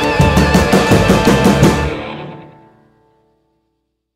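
A band with drums playing the final bars of a song, stopping about two seconds in; the last chord rings on and fades out within about a second.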